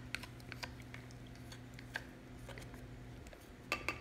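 Faint, scattered light taps and clinks of a stick blender and wooden stir stick against a glass pitcher of soap batter, with a clearer ringing glass clink near the end. A low steady hum runs underneath.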